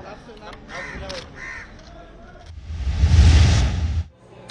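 A news transition whoosh: a rush of noise with a deep low rumble that swells over the last second and a half and cuts off sharply as the picture wipes to the next story. Before it, low background ambience with two short bird-like calls about a second in.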